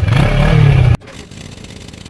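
Motorcycle engine revving loudly through its exhaust for about a second, then cut off abruptly, with a quieter engine sound running on after.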